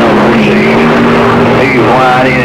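CB radio speaker playing received stations: garbled, overlapping voices with a steady low tone running underneath.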